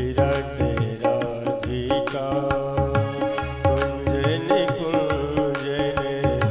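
Instrumental passage of a devotional bhajan: a melody on an electronic keyboard over a steady rhythm on hand drums, with deep bass drum strokes keeping time.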